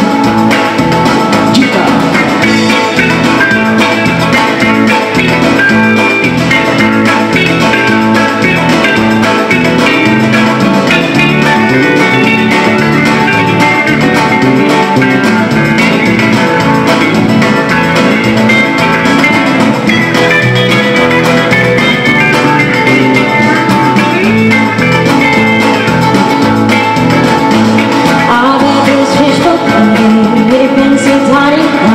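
Live band playing an instrumental break: an electric lead guitar over a strummed acoustic guitar and a stepping low bass line, with no singing.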